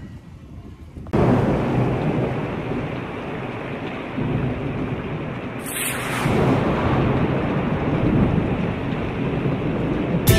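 Heavy rain with rumbling thunder. It starts abruptly about a second in and runs on as a loud, steady wash with slow swells.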